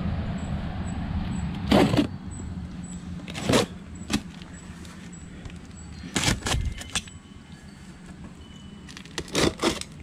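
Large cardboard box being shifted on concrete and cut open with a knife: a handful of short, sharp scrapes and rustles of cardboard. A low rumble runs under them and fades after about two seconds.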